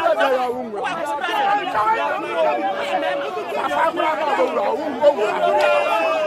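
Women arguing loudly, several voices shouting and talking over one another, with crowd chatter behind them.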